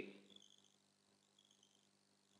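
Near silence: faint room tone with a few faint, short high-pitched tones coming and going.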